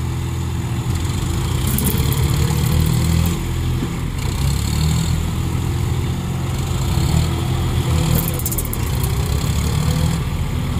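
Diesel engines of John Deere farm tractors running steadily, with the engine note rising under power twice: about two seconds in and again near the end.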